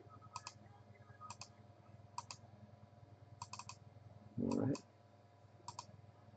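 Computer mouse buttons clicking, mostly in quick pairs and short runs about once a second. A brief hum of a voice about four and a half seconds in.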